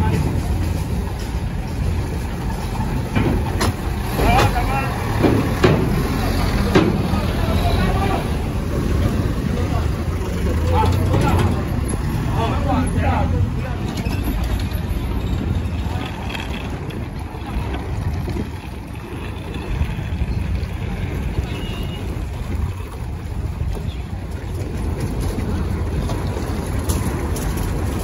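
Engines of a forklift and a pickup truck running as they drive off a ferry over its metal loading ramp, with a steady low rumble and a few sharp knocks and clanks in the first several seconds. Voices can be heard in the background.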